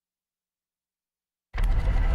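Dead silence, then about one and a half seconds in a loud, bass-heavy news-segment bumper stinger starts abruptly under an animated graphics open.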